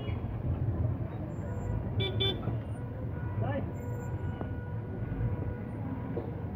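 Busy street traffic with background voices over a steady low rumble, and two quick horn toots close together about two seconds in.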